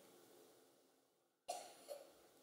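Near silence in a pause of speech, broken about one and a half seconds in by a brief, faint cough.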